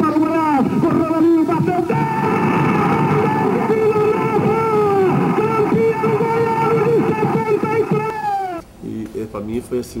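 Radio football commentator's long drawn-out goal cry for a penalty kick, one shout held on a single pitch for about six and a half seconds. It cuts off shortly before the end, and quieter speech follows.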